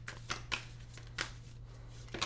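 A deck of oracle cards being shuffled by hand, with a few separate crisp snaps of the cards spread across the two seconds.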